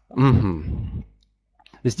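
A man's voice: a single held vowel sound lasting about a second, like a hesitation 'uh', followed by a short pause.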